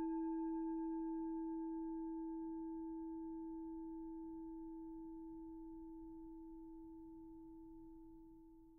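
A struck singing bowl ringing out: one steady low tone with fainter higher overtones, fading slowly and evenly until it has almost died away by the end.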